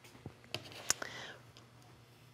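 Quiet handling of sweaters and small things on a worktable, with two light clicks about half a second and a second in, followed by a soft breath.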